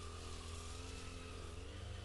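Faint, steady low hum of a distant engine under quiet outdoor background noise.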